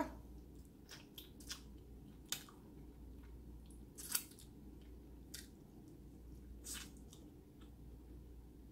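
Faint eating sounds of a person chewing a fried chicken wing: scattered wet lip smacks and sharp clicks, a few seconds apart, the loudest about four seconds in.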